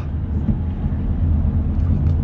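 Car running, heard from inside the cabin: a steady low rumble.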